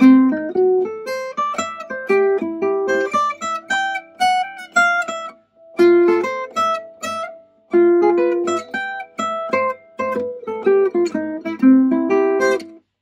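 Gypsy jazz acoustic guitar played with a pick: a quick single-note lick of arpeggios over a turnaround in C major (F, F sharp diminished, C, A7, then D minor 7, G7, C). There are two brief pauses partway through.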